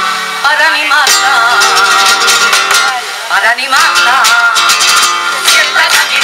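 Women's group singing a Spanish song in flamenco style, with acoustic guitar and rhythmic hand clapping. The singing pauses briefly about half a second in and again about three seconds in.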